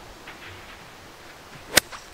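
A six iron striking a golf ball: one sharp click near the end, with a short swish of the swing just before it. It is a cleanly struck, good shot.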